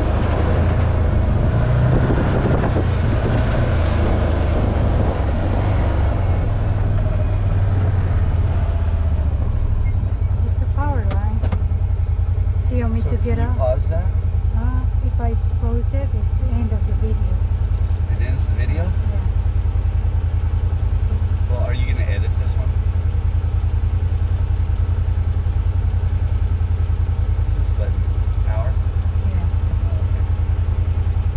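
Can-Am Maverick side-by-side's engine running under way, mixed at first with wind noise on the microphone. From about nine seconds in, the wind drops away and a steady low engine hum is left.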